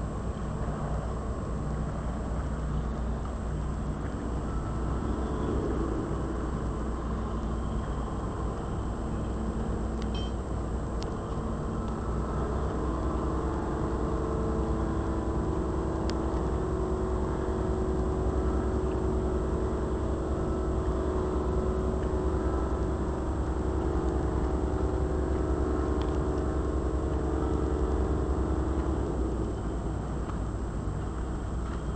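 Boat engine running steadily with a low drone. A higher, even hum joins it about halfway through and drops away near the end.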